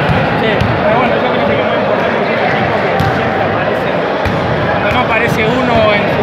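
Echoing hubbub of voices in a basketball gym, with irregular sharp thuds of basketballs bouncing on the court.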